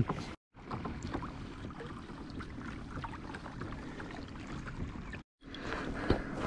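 Hobie Mirage Outback pedal kayak under way on calm water: a steady low wash of water along the hull with faint clicks from the Mirage pedal drive. The sound drops out completely twice, briefly, about half a second in and again near the end.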